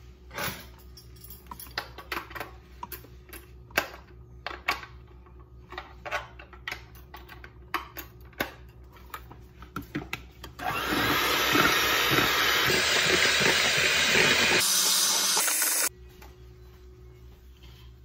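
Electric hand mixer beating a thin batter of milk, melted butter, oil and eggs. For about ten seconds there are only scattered clicks and knocks. Then the mixer runs steadily and loudly for about five seconds and cuts off suddenly.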